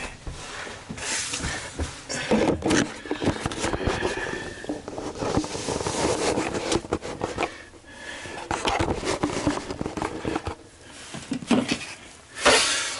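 Irregular scraping, rustling and small knocks of handling noise, uneven in loudness, with no steady motor or fan sound.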